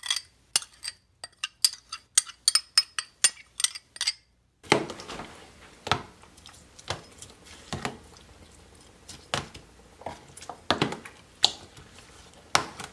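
A metal spoon clinking rapidly against a glass bowl as marinade is scraped out. About four and a half seconds in the background changes, and the spoon then makes scattered softer knocks and scrapes against a plastic container as fish fillets are turned in the marinade.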